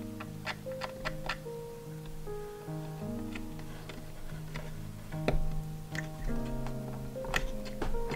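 Soft background instrumental music of slow held notes and chords, with a scattering of light, sharp clicks and taps from small wooden dollhouse window pieces being handled and pressed into place.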